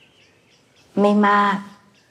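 Faint birds chirping in the background. A woman's voice speaks a short phrase about a second in and is the loudest sound.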